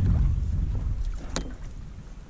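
A kayak gliding on a lake: a low rumble of water and wind against the hull and camera, fading steadily as the boat slows. One sharp click comes a little past halfway.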